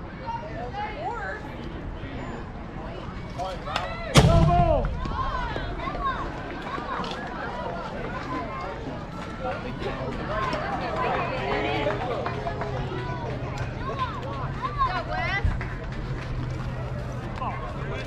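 A bat hits the ball with a single sharp crack about four seconds in. Spectators and players then shout and cheer for several seconds, many voices at once.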